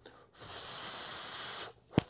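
A man breathing out forcefully through pursed lips: a steady rush of air lasting about a second and a half, starting about half a second in. It is the out-breath of a 4-7-8 breathing routine.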